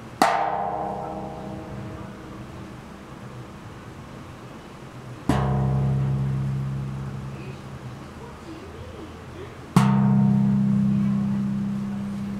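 Large antique hand-made brass bossed gong (tawak) struck by hand three times, each stroke ringing out and slowly fading. The first, on the outer ring, rings higher and thinner. The second and third bring out a strong, deep, steady hum.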